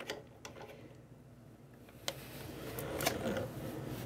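Plastic coupling nut being unthreaded from a toilet fill valve's shank, with a few light clicks. In the second half, leftover tank water dribbles out of the opened connection onto a towel, a soft splashing that grows slightly louder.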